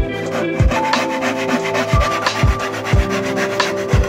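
Hand saw cutting through a wooden plank in rasping strokes, over background music with a regular beat.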